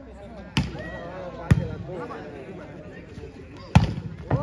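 Volleyball struck by hand three times in a rally, sharp slaps: two in the first second and a half, then the loudest, a spike at the net, near the end. Players and onlookers shout between the hits.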